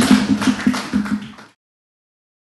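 Audience applauding, a dense patter of many hands clapping that fades and cuts off to silence about a second and a half in.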